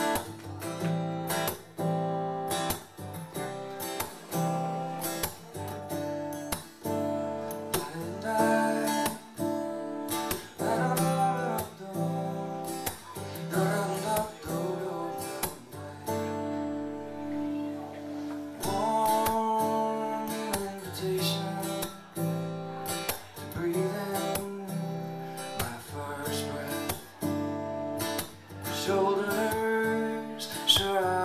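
Solo acoustic guitar playing a song's instrumental intro, a flowing pattern of picked notes and chords, before any singing.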